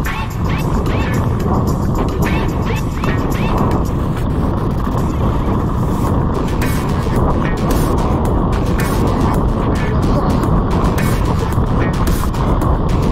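Steady rumble of a mountain bike rolling over a gravel path, with wind rush on the microphone, under music that has a beat. The beat stands out more from about halfway.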